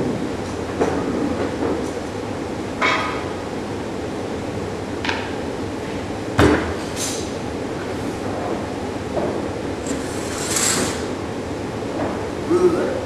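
Steady mechanical hum of a workshop's room ventilation, with a few brief handling noises and one sharp knock about six and a half seconds in.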